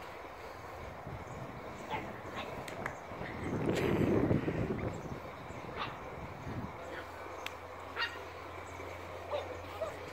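Young Cavapoo puppy yipping now and then in short, scattered calls, with a brief rush of noise about four seconds in.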